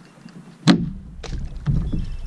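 A sharp knock about a third of the way in, then two softer knocks and a low rumble: a plastic kayak and its gear being handled at the water's edge.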